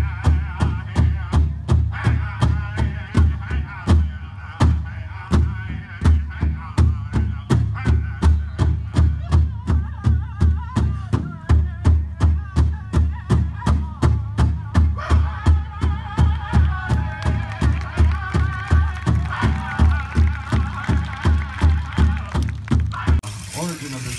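Powwow drum beaten in a steady rhythm of about two strokes a second, with singers' high, wavering voices over it. The drumming stops about a second before the end.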